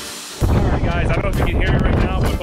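Electronic music fades out. About half a second in, strong wind starts buffeting the camera's microphone, a loud low rumble under a man talking.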